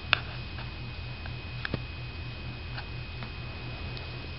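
Several light clicks and taps over a steady low hum. The sharpest click comes about a tenth of a second in, and two more follow close together near the middle.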